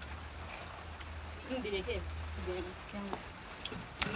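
Brief, indistinct voices over a steady background hum and hiss, with a few light clicks from metal and plastic dishes being handled.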